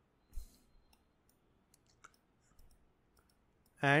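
A few faint clicks from a computer mouse and keyboard, the loudest about half a second in.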